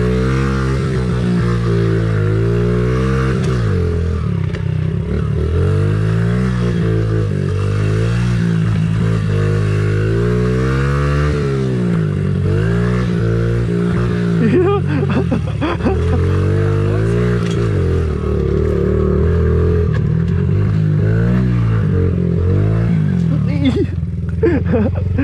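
Honda CRF50 pit bike's small single-cylinder four-stroke engine being ridden hard, revving up and dropping back again and again every second or two as the rider accelerates and backs off. A few knocks and rattles from the bike come in about two-thirds of the way through.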